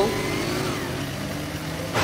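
Cartoon vehicle engine sound effect, a steady low hum, over an even hiss of rain.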